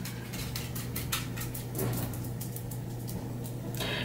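Light, rapid clicks and ticks over a steady low hum.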